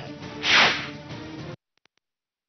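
A whoosh sound effect swelling and fading about half a second in, over a steady background music bed. Both cut off abruptly after about a second and a half.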